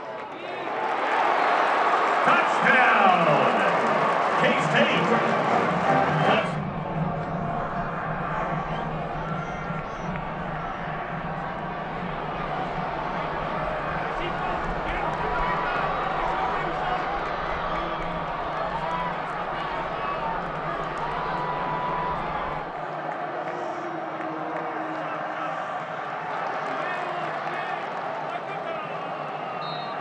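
Stadium game sound of a college football game: crowd noise mixed with indistinct voices, loudest and busiest in the first six seconds, then steadier.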